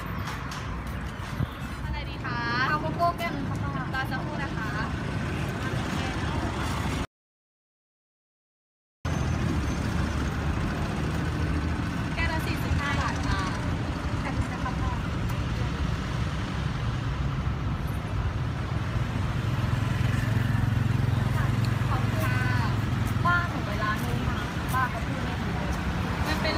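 Roadside traffic noise, a steady low rumble with people's voices now and then. The sound drops out completely for about two seconds, about seven seconds in.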